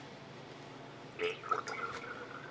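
Mixed paint being poured from a mixing cup into a spray gun's aluminium cup: a faint trickle of thick liquid into metal that starts about a second in.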